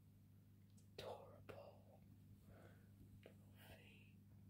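Near silence with a low steady hum, broken by a few faint, short whispers.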